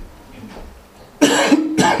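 A man coughing twice, loud and close to the microphone, starting a little over a second in.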